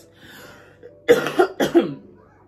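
A woman coughs twice in quick succession, about a second in.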